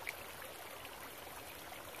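Faint steady background hiss, with one light click right at the start.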